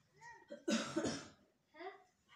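A person coughing: two quick, rough bursts close together, about a third of the way in, with faint voices around it.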